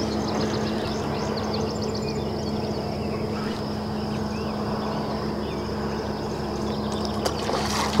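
Steady hum of a boat motor running while the boat drags baits, with water sloshing against the hull and faint bird chirps over it in the first few seconds.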